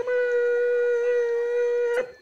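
Beaker, the Muppet lab assistant, letting out one long, nasal, alarmed 'meeeep' cry held at a single steady pitch.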